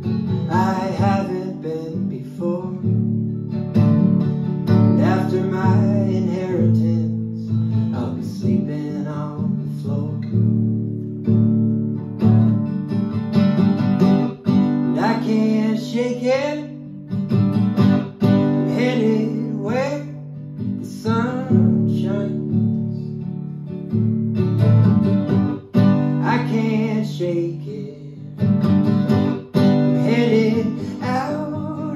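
A man singing a folk song while strumming an acoustic guitar, solo, the voice coming and going between lines over steady chords.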